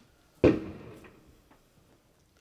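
A single thump about half a second in, dying away over about half a second, followed by a couple of faint clicks.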